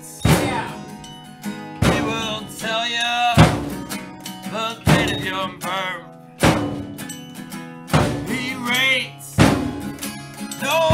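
Home band playing a song: loud hits from guitar and drums together about every second and a half, with a man singing over them.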